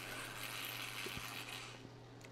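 Faint steady hum with a soft hiss from a running home water-distilling setup, the stovetop pot still and its circulation pump, the hiss fading near the end. Two faint clicks about a second in.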